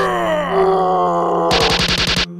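A cartoon character's long groan falling in pitch, then a quick rattle of sharp clicks about a second and a half in.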